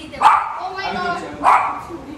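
A dog barking twice, a little over a second apart.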